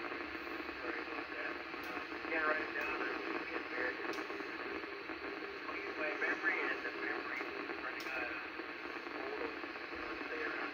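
Icom IC-746PRO transceiver receiving a weak FM signal on the 29.640 MHz ten-metre repeater, heard as a steady narrow-band hiss. Faint, unintelligible speech comes and goes within it.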